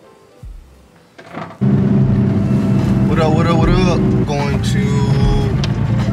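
Background music, then, after a sudden cut about a second and a half in, a Nissan Skyline R33's engine running steadily as heard from inside the cabin, with music and singing over it.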